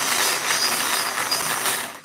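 Hand-cranked wire bingo cage spinning, its balls rattling and clattering as they tumble inside, turned to draw a random number. The rattle dies away near the end as the cage stops.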